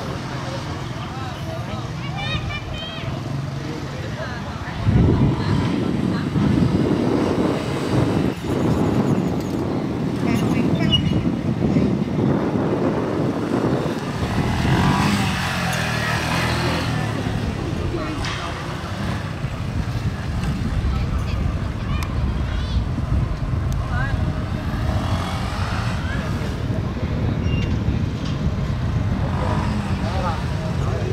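A small motorcycle engine running and revving as the bike is ridden, getting much louder about five seconds in. People's voices are heard over it.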